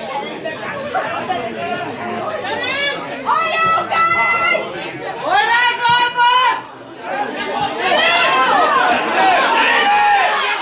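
Men shouting and calling to each other during open play in a football match, with overlapping chatter. Two long drawn-out shouts stand out in the middle, about a second apart.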